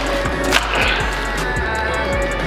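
Background music over the scraping and knocking of a metal EZ curl bar being pulled out of its cardboard shipping tube, with one sharp knock about half a second in.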